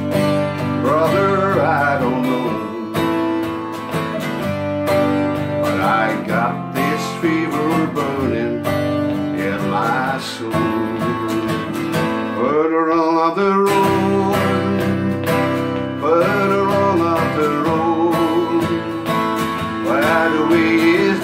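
Twelve-string acoustic guitar strummed in a steady rhythm while a man sings along in phrases, a folk-style song with voice and guitar.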